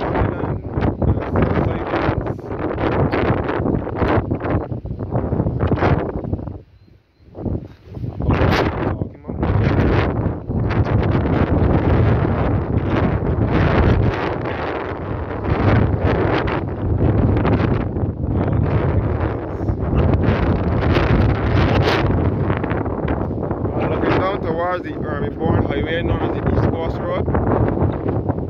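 Wind buffeting the microphone in strong, uneven gusts, with a brief lull about seven seconds in.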